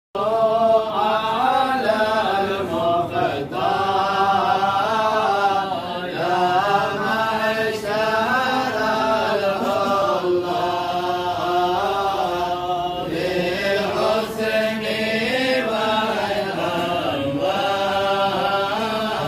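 A group of men chanting together in unison, a Mawlid devotional recitation in praise of the Prophet, the melody rising and falling without a break.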